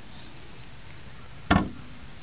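A single sharp knock about one and a half seconds in, with a brief ring after it, over a faint steady background.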